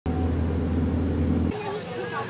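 Steady low rumble of a vehicle in motion, heard from inside the cabin. It cuts off abruptly about one and a half seconds in, and voices follow.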